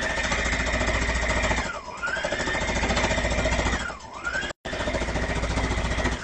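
Brother electric sewing machine stitching a seam, its motor whining over rapid needle strokes. Twice the machine slows, the whine dropping in pitch, then speeds back up.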